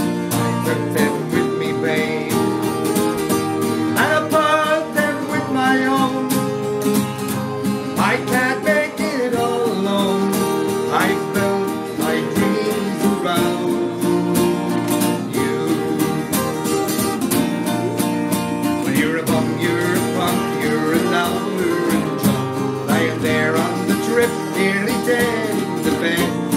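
Two acoustic guitars strummed together in a steady rhythm, playing the chords of a folk song.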